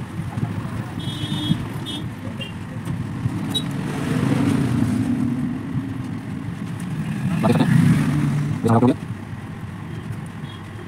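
Low, steady rumble of road traffic passing, swelling twice, with a brief voice near the end.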